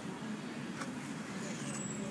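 Steady low hum of distant city traffic, with one short, soft rustle of a photo-book page being turned a little under a second in.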